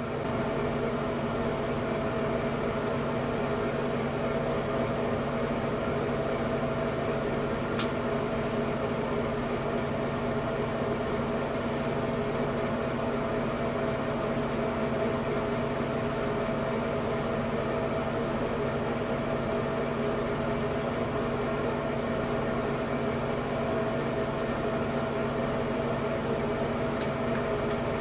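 Light-and-fan combination unit running steadily: an even hum with a few steady tones in it. A single faint tick about eight seconds in.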